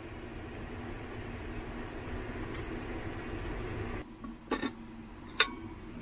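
An omelette frying in a pan on a stove, a steady soft sizzle for about four seconds. After it stops, two sharp clicks.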